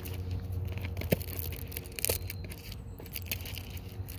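Paper packaging being torn and crinkled by hand while tea is prepared, with a few sharp clicks over a steady low hum.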